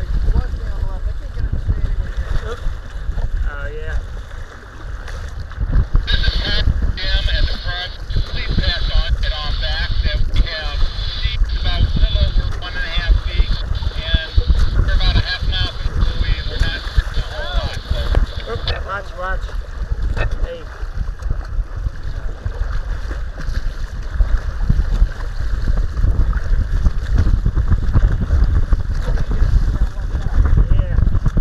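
Wind buffeting the microphone on a kayak in choppy water, with waves slapping and splashing against the hull. A brighter hiss with faint chirping over it comes in from about six seconds in until a few seconds before the end.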